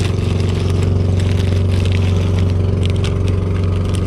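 An engine running at a steady speed, an even low drone, with the crinkle of a plastic soft-bait packet being handled close by.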